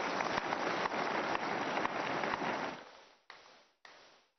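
Large congregation applauding: dense, continuous clapping that fades out about three seconds in, followed by two brief snatches that cut in and off abruptly.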